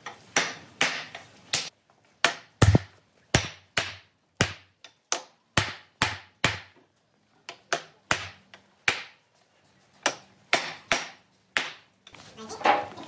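Wooden mallet knocking slats of a wooden cradle frame into their joints, a run of sharp knocks about two a second with a couple of short pauses.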